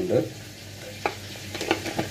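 A few light clicks of a spoon against a small stainless-steel bowl as chilli powder is tipped in, about a second in and twice near the end, over a faint steady hiss.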